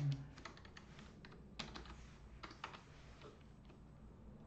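Computer keyboard being typed on: quiet, irregularly spaced keystroke clicks.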